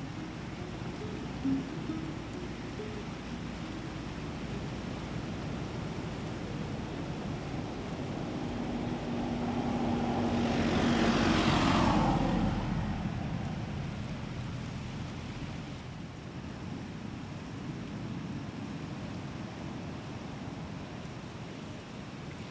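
A car passing by on the road: it grows louder over a few seconds, peaks about halfway through, and its pitch falls as it goes past, then fades. Under it is a steady outdoor hiss of wind and surf.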